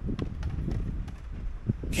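Wind buffeting the microphone as a steady low rumble, with a few short light clicks and knocks scattered through it.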